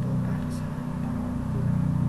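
A steady low hum, with a person's voice faintly over it.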